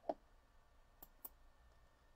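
Near silence with a short faint blip at the start, then two faint clicks about a second in, a quarter of a second apart.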